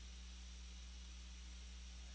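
Near silence: a faint steady electrical hum with low hiss from the recording setup, with no clicks or other events.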